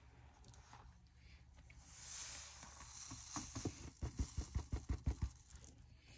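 Fine glitter sprinkled by hand onto a glued paper journal cover, a soft hiss of falling grains about two seconds in. Then a quick run of about ten soft low taps as the cover is knocked over a metal tray to shake the loose glitter off.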